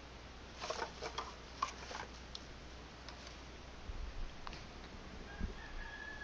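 Rummaging through painting supplies to find a brush: light clicks and clatter of small objects being moved about. There is a quick cluster of clicks about a second in, a few scattered knocks after it and a soft thump near the end.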